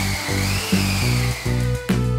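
Edited-in background music with a steady beat. Over it runs a high, wavering tone that rises and then falls, and there is a sharp click near the end.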